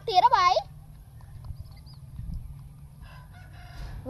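A girl's loud, high, sing-song call in two rising-and-falling parts, ending about half a second in, close to a rooster's crow in shape. Then low outdoor background for the rest.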